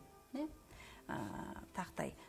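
A person's voice: a short syllable, then about a second in a rough, growly vocal sound lasting under a second.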